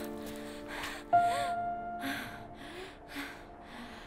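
Soft, sad film-score music with held keyboard chords, a new note entering about a second in, under a run of short breathy gasps, about two a second.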